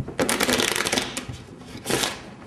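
A deck of playing cards being shuffled by hand: a rapid run of card clicks for about a second, then a short burst near the end.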